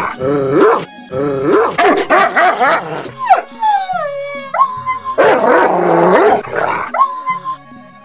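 A dog barking and howling in three bursts, dubbed over background music, as the dog comes upon something on the ground.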